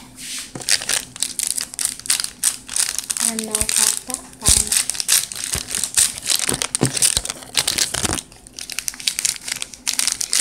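Rapid, continuous crinkling and crumpling of a sand-art kit's paper backing as pieces are peeled off by hand. It pauses briefly about eight seconds in, then starts again.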